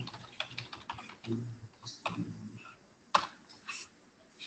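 Computer keyboard typing: a run of quick key clicks, with one louder keystroke a little after three seconds in.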